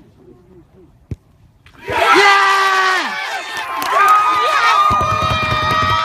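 A single sharp knock about a second in, then a small crowd of spectators bursting into loud, long cheers and shouts of "Yeah!" as the winning penalty goes in. From about five seconds a rumbling handling noise on the microphone joins the cheering.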